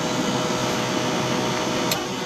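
Frozen carbonated slush machine dispensing red slush through its tap into a cup: a steady hiss with a faint steady hum underneath.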